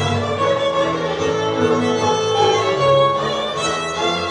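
Live Hungarian folk dance music: a fiddle plays the tune over an accordion and a tuba bass line.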